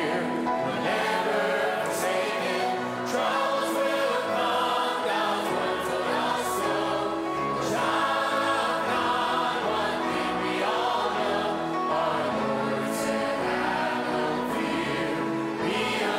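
Church choir singing a gospel song with the words 'Be of good cheer, we're never forsaken', led by a man singing into a microphone and accompanied by an orchestra with violins.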